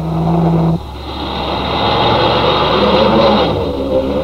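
A car's steady engine note breaks off abruptly about a second in. It gives way to the rushing noise of a car running on a wet skid-pan surface, which swells and then fades.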